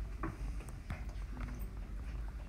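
Stylus writing on a tablet screen: a few soft, irregular taps and light scratches as a word is handwritten, over a low steady hum.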